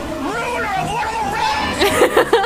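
Young people's voices, excited chatter and calls with no clear words.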